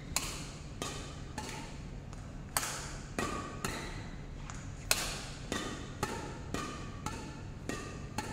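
Badminton rackets striking a shuttlecock in a fast rally, a sharp hit about every half second, each followed by a short ringing echo.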